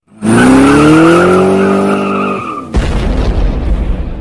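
Vehicle sound effect: an engine revs up, rising in pitch, with a tyre squeal over it for about two and a half seconds. It then changes abruptly into a loud, noisy rumble.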